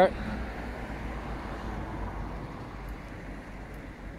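Road traffic noise: a steady rush of passing vehicles that fades slightly toward the end.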